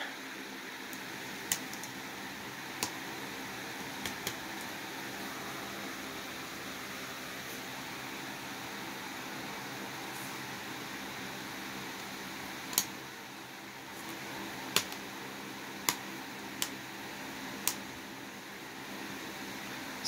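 Steady room noise, a hum and hiss like a fan running, with about nine small, sharp clicks and taps scattered through it.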